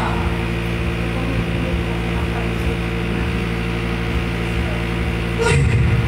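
A steady low hum made of several even, unchanging tones, from a running machine or electrical system. A woman's voice starts up near the end.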